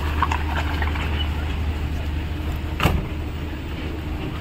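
Jeep Wrangler Rubicon idling with a steady low engine hum. About three seconds in there is a single sharp click as the door is opened.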